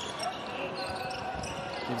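Live basketball game sound in an arena: a low crowd murmur with the ball bouncing on the hardwood court.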